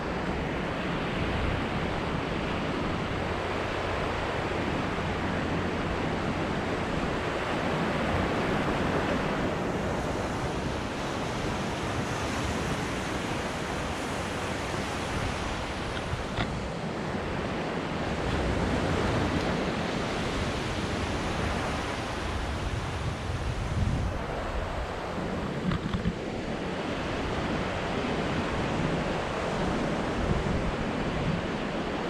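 Sea surf breaking on a beach, mixed with wind buffeting the microphone: a steady rushing noise with a low rumble, swelling and easing every several seconds.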